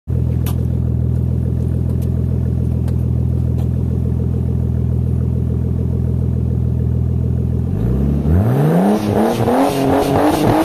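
Nissan Skyline R33's turbocharged straight-six idling steadily, then revved sharply about eight seconds in, with a rising engine note and rapid crackling pops from the exhaust as the revs come up.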